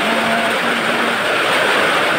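Heavy typhoon rain pouring down, a steady loud rush with no let-up.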